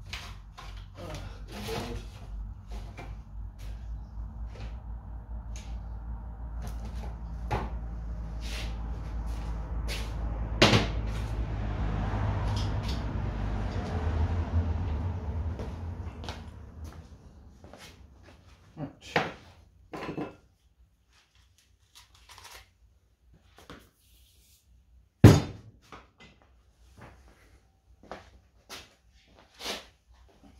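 A power tool runs steadily, its sound swelling with a rough hiss from about ten seconds in, then dying away by about seventeen seconds. After that come scattered workshop knocks and taps, the loudest one sharp knock about 25 seconds in.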